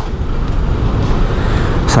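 Road traffic noise in congested stop-and-go traffic: motorcycles and other vehicles running close by, a loud, even rumble, with a brief hiss just before the end.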